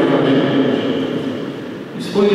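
A man speaking into a microphone, his voice trailing off into a short pause that fills with the echo of a large hall.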